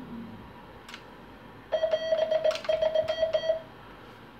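Semi-automatic telegraph key (a Vibroplex-style bug) keying Morse code: a mid-pitched beeping sidetone chopped into a quick run of short tones, with the key's contacts clicking, for about two seconds from just before the middle. A single click comes about a second in.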